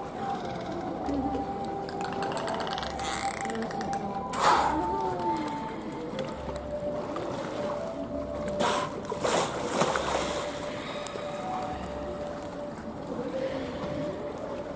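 Bottlenose dolphins at the surface of a pool make a few short, sharp water sounds, the loudest about four and a half seconds in and several more close together around nine seconds in. Under them, background music plays with a slow beat.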